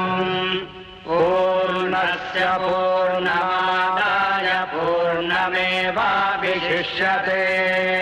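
Devotional chanting sung with long held, bending notes over a steady low drone. It breaks off briefly about a second in.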